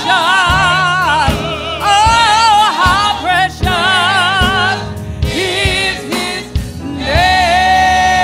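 Gospel choir singing with a lead voice carrying a wide vibrato over steady instrumental backing; a long held note starts about seven seconds in.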